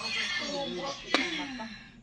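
Cartoon soundtrack playing from a television: music and character voices, with one sharp hit a little after a second in.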